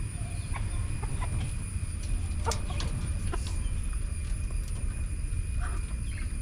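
Egyptian Fayoumi chickens clucking, a few short clucks spaced out over a low steady rumble.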